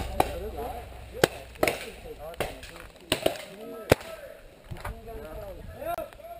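A string of sharp, irregular knocks and snaps, about seven in all and loudest about four seconds in, as a group walks over leaf litter and twigs with paintball gear knocking about. Faint voices of the crowd run underneath.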